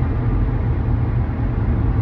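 Steady low rumble of a car in motion, heard from inside the cabin.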